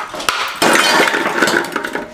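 A block of ice dropped into a large stainless steel bowl, cracking apart and clattering against the metal and the ice already in it, starting about half a second in.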